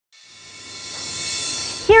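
A sustained high chord of steady tones swelling up from silence for nearly two seconds, then breaking off as a woman starts to speak.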